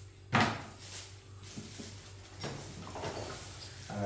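Groceries being unpacked from plastic shopping bags: a sharp knock about a third of a second in, then several lighter knocks and rustling of the bags as items are handled and set down on a wooden table.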